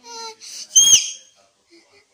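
A high, whistle-like squeal about a second in, held briefly and then falling sharply in pitch; softer short tones come just before it.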